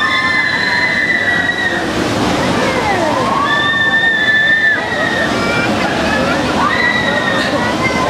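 Riders on a spinning spider-arm amusement ride shrieking in long high screams, three times, over a steady noisy rush of the ride and scattered voices.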